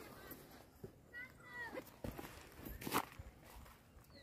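Faint scattered knocks and scuffs, the loudest about three seconds in, with a brief chirp-like call a little after one second.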